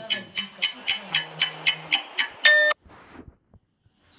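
Rapid, even ticking, about four ticks a second, for about two seconds, ending in a short bright tone; the sound then cuts out almost to silence.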